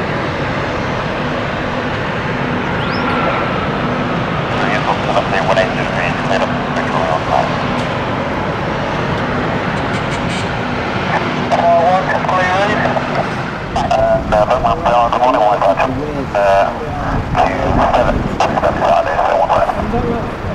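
Steady engine roar throughout, with people's voices chatting and laughing over it in the second half.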